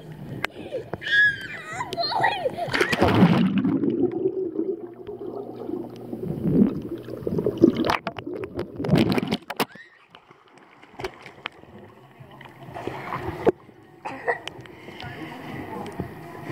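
Water splashing in a swimming pool, heard from a waterproof action camera at the waterline, with a child squealing about a second in. Around three seconds in comes a loud splash, then the camera goes underwater and the sound turns muffled and gurgling for several seconds, before children's voices return near the end.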